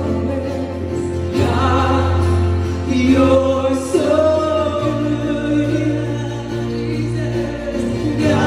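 Live worship band playing a gospel praise song: a woman singing lead over keyboard, acoustic guitar and drums. A held bass note steps up to a higher one about five seconds in.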